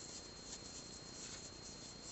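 Faint rustle and small ticks of a metal crochet hook pulling yarn through single crochet stitches, over low room hiss with a thin steady high tone.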